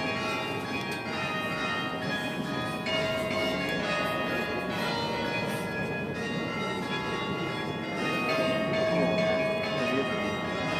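Church bells ringing, with many overlapping tones that keep sounding and are struck afresh every few seconds, over a low murmur of the crowd.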